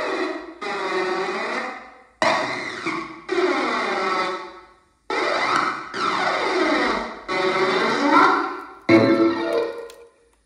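Ghost box radio sweep played through a spirit portal effects box and a small amplifier: chopped fragments of radio sound, about one a second, each cutting in suddenly and trailing off in echo, with shifting tones and gliding pitches.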